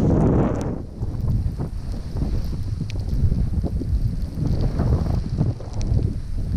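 Wind buffeting an action camera's microphone while moving down a snow slope: a rough, uneven rumble that is loudest in the first second, dips briefly, then carries on.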